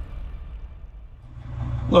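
The last of an electronic intro music track fades away. About two-thirds of the way in, a Cat next-generation medium wheel loader's engine is heard idling from inside its cab as a steady low rumble.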